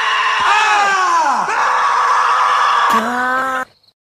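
A loud, high-pitched, drawn-out howl from several overlapping voices, with falling pitch glides in the first second and a half. A lower, steadier howl joins about three seconds in, and all of it stops abruptly shortly before the end.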